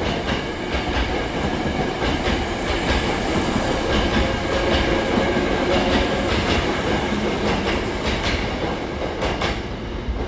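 Hankyu 8000 series electric train running past and away, wheels rumbling on the rails with the steady whine of its Toshiba GTO-VVVF traction inverter. A few wheel clacks over rail joints near the end as the last car goes by and the sound thins out.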